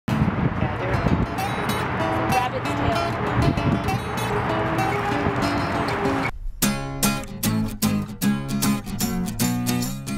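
For about six seconds a dense, busy wash of sound with voices in it, then a brief break. After that an acoustic guitar begins strumming in a steady rhythm, with conga drum hits.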